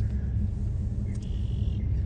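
Car driving slowly, heard from inside the cabin: a steady low rumble of engine and tyres on the road.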